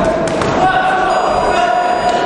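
Spectators shouting in a large echoing sports hall during the closing seconds of an amateur boxing round. A steady ringing tone comes in about half a second in and holds until the end.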